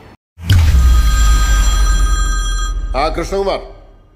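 A film-soundtrack impact hit: a deep boom with a high, steady metallic ringing over it, held for about two seconds and then fading away. A man's voice speaks briefly near the end.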